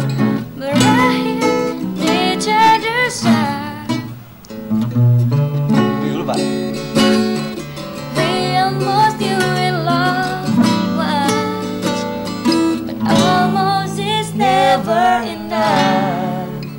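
Acoustic guitar strummed in chords, with a voice singing along over it.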